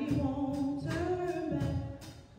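Gospel singing led by a woman's voice through the church sound system, in long held notes, with one percussive hit about a second in.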